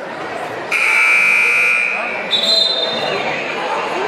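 Gymnasium scoreboard buzzer sounding once for about a second and a half, starting under a second in, the signal that ends a timeout; a shorter, higher tone follows. Crowd chatter underneath.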